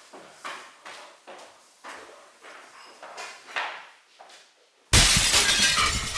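Glass shattering loudly about five seconds in, with a noisy tail dying away. Before it come soft, evenly spaced taps at about two a second.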